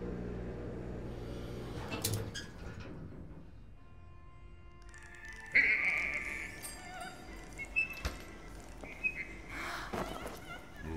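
Film score with sustained tones fading out over the first few seconds. About halfway through, a portable radio-cassette player comes on with a sudden loud burst, followed by scattered short wavering tones and clicks as its tuning knob is turned.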